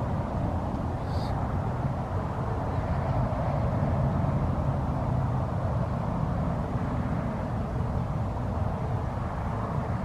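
Steady low engine-like drone with no clear rise or fall, and a brief faint high sound about a second in.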